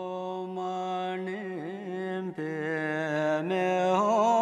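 A single voice chanting a mantra in long held notes, with small wavering turns in pitch and short breaks about two and a half and three and a half seconds in.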